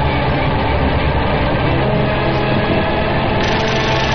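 A loud, steady, dense droning noise with a heavy low rumble and many held tones layered over it, part of an experimental soundtrack. Its texture shifts slightly a little before the end.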